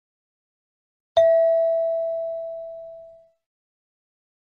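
A single bell-like chime struck once about a second in, ringing at one pitch and fading away over about two seconds: the cue between questions in a recorded listening test.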